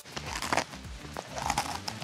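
Scattered dry crackles and crunches as hard yuca-flour biscuits (cuñapé) are bitten into, the loudest about half a second in.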